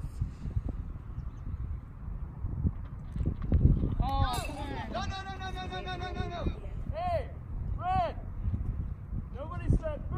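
High-pitched voices shouting short calls across a ball field, with one longer held call about five seconds in and more short shouts near the end, over wind buffeting the microphone.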